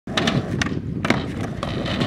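Skateboard wheels rolling on a concrete skatepark surface, a steady rumble broken by about five sharp clacks.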